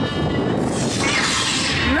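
Lightsaber sound effect played over stage loudspeakers for an answer reveal: a hissing, humming rush that builds about a second in.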